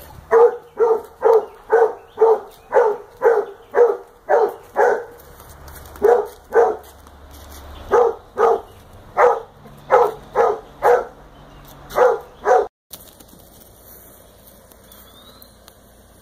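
A dog barking over and over, about two barks a second with a couple of short pauses, cut off suddenly a little before the end; then only faint outdoor background.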